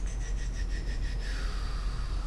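A steady low electrical hum under faint rubbing noise, with a few soft ticks in the first second.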